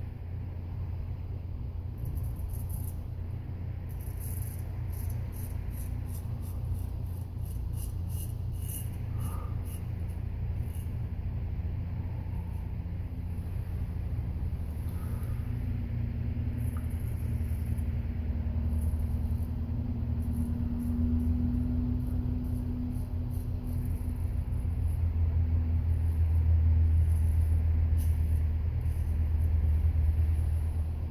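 Friodur 6/8 straight razor scraping through lathered stubble in runs of short, quick strokes, over a steady low hum that is the louder sound and swells near the end.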